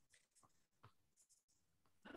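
Near silence: a pause between speech, with only a couple of very faint short ticks.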